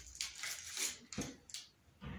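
Faint, scattered clicks and rustles of hands handling a small plastic syringe as it is readied to draw up a vaccine dose.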